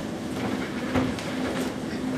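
A rhythmic rolling clatter over a steady low hum, like train wheels on rails, with one heavier knock about halfway through.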